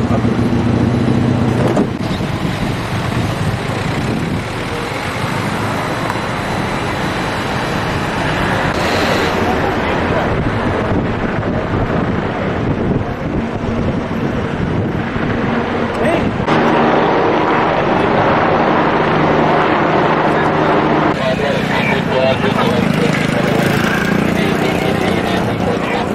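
Road traffic and street noise, steady and fairly loud throughout, with indistinct voices mixed in. Its character shifts abruptly a few times.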